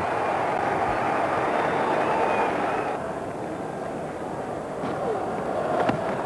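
Steady crowd noise from a cricket ground's stands, heard through a TV broadcast. It eases a little about halfway through and builds again near the end, where there is a faint crack of bat on ball as the batsman plays his shot.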